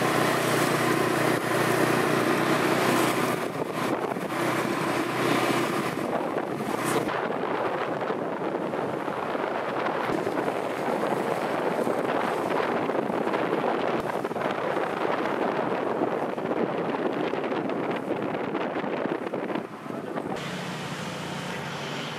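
Steady rushing noise of wind on the microphone and wheels rolling on asphalt, shifting in tone about seven seconds in and again near the end.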